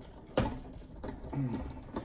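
A sharp knock about a third of a second in and a lighter click near the end, from things handled at the cocktail table, with a brief low murmur of a voice between them.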